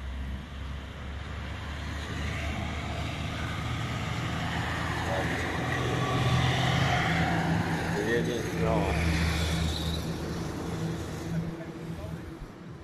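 A motor vehicle's engine running nearby with a steady low hum, growing louder to a peak about six to eight seconds in and then fading, as if it passes by.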